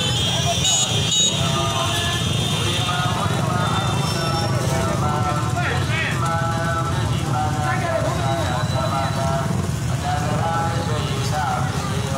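A stream of motorcycles and scooters riding slowly past, their small engines making a steady low rumble, under many people's voices talking and calling out at once.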